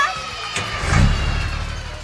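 Cartoon truck driving-off sound effect: a falling whoosh about half a second in and a low engine rumble that peaks about a second in and fades away, over background music.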